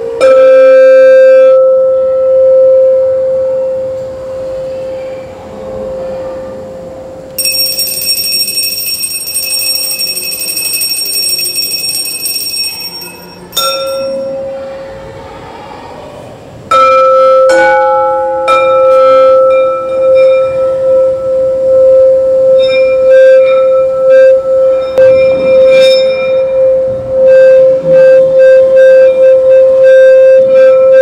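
A hand-held singing bowl is struck with a mallet at the start, and its single low tone rings out and slowly fades. A brighter, higher metallic ring sounds for several seconds in the middle. About two-thirds of the way through, the bowl is struck again and then kept sounding, its tone held and wavering in pulses.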